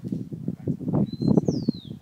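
A bird's high whistled call, a brief steady note followed by a longer note falling in pitch, about a second in. It sits over a loud, uneven low rumble of noise.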